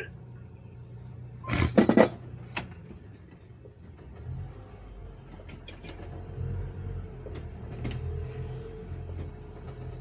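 Towboat's twin Suzuki inline four-cylinder four-stroke outboards running at low speed, picking up slightly about four seconds in with a steady engine tone. A loud clatter of knocks comes about a second and a half in, and a few light clicks follow later.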